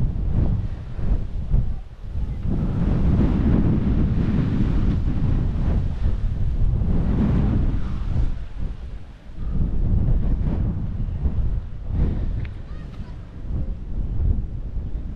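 Wind gusting across the microphone: a low, rumbling buffeting that swells and drops, with brief lulls about two seconds in and again near nine seconds.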